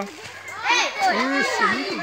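Children's voices talking and calling out, after a short quieter moment at the start.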